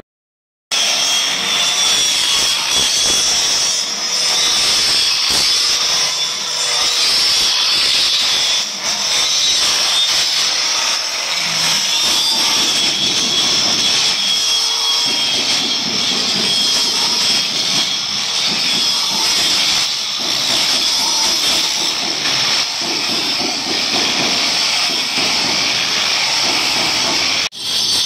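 Handheld angle grinder cutting a marble slab: a steady, high-pitched whine over a hissing grind, with no break in the cut. It starts suddenly just under a second in and stops abruptly shortly before the end.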